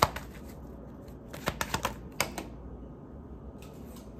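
Tarot deck being shuffled by hand: a few short, sharp clicks and snaps of the cards, in a cluster about a second and a half in and another just after two seconds, over a low steady hum.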